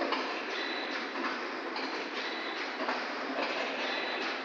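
Multitrack vertical form-fill-seal liquor pouch packing machine running: a steady mechanical clatter with a beat that repeats about twice a second as the machine cycles.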